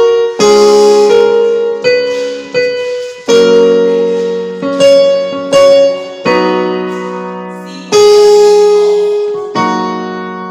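Portable electronic keyboard on a piano voice playing block chords in F sharp, about nine in all. Each chord is struck and left to ring and fade before the next.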